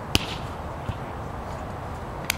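A hand striking a volleyball hard at the net, one sharp smack just after the start, then a softer thump about a second in.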